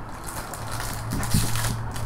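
Foil trading-card pack crinkling as it is handled and lifted out of its tin box, in short crackly bursts strongest in the second half, over a steady low hum.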